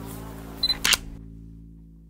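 A camera's short high beep and then a sharp shutter click, about half a second to a second in, over background music that fades out.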